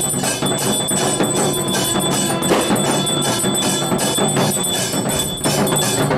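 Bells ringing with steady, fast percussion, about four strokes a second, in music.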